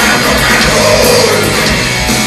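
Live rock band playing loud, with electric guitars, bass and drums through the hall's PA system, recorded from among the audience.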